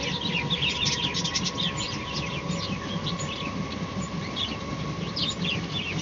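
Many small birds chirping continuously in quick, overlapping high chirps, with a faint steady high tone beneath.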